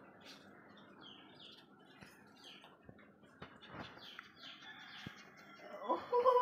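Faint, scattered bird chirps, short and high, with a few soft clicks in between.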